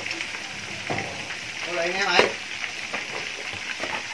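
Chicken wings sizzling steadily as they deep-fry in hot oil in an aluminium wok, with a metal ladle stirring through them. There is one sharp click just after two seconds in.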